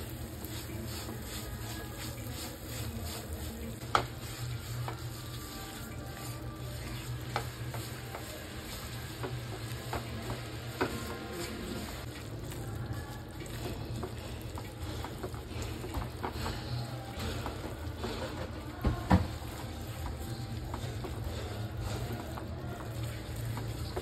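Jaggery melting in ghee sizzles in a nonstick frying pan as a silicone spatula stirs and scrapes it through, turning the lumps into bubbling syrup. A few sharp taps of the spatula on the pan stand out: one about four seconds in and two close together near the end.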